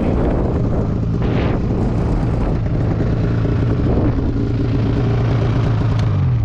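Snowmobile engine idling steadily.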